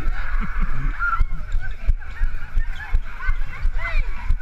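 A group running on a hard floor: the handheld camera's jolts thump with each stride, several times a second. Many short high squeals and shrieks run over it, with a laugh about a second in.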